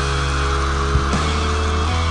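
Rock music with no singing. Distorted electric guitars hold a sustained chord over a steady low bass note, and there are a couple of drum hits about a second in.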